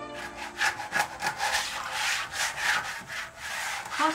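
Rough rasping strokes of hand work, something being rubbed or scraped at a kitchen table, repeated about three times a second.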